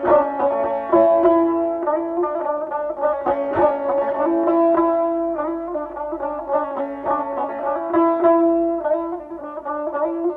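Azerbaijani ashiq instrumental music: a plucked saz playing quick repeated notes over long held tones.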